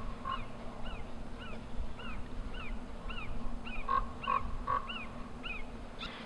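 An animal calling over and over, a short rising-and-falling chirp about twice a second.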